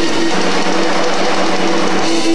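A rock band playing live: electric guitars over bass, keyboards and drums in a steady, dense passage, with no singing.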